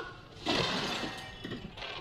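A sudden crash with a shattering, rattling tail from the animated film's soundtrack, about half a second in, dying away over about a second, followed by a few small ticks.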